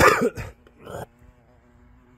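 Short animal cries: two loud ones in the first half second and a fainter one about a second in.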